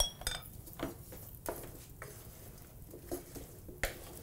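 A utensil stirring cut potatoes in an Oneida stainless-steel roasting pan, giving irregular scrapes and clinks against the metal, with a sharper knock just before the end.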